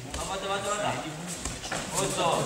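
A man's voice calling out during a judo bout, the words not made out, with a dull thud on the mats about one and a half seconds in.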